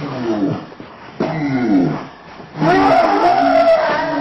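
Three drawn-out howling animal cries, the pitch sliding downward in the first two, the third longer and held on a higher, steadier note.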